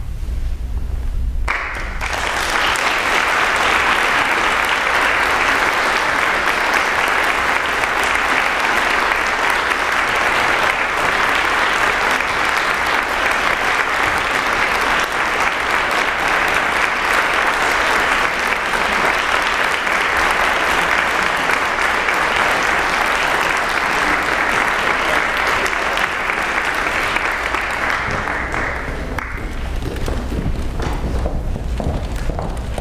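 Audience applause breaks out about two seconds in, after a low held tone, and runs on steadily before fading near the end.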